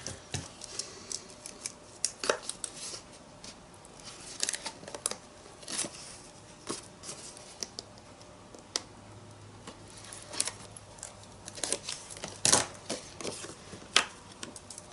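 Hands handling paper and tape close to the microphone: short rustles, crinkles and scattered sharp clicks and taps as pieces are peeled, snipped and pressed down. The loudest click comes near the end.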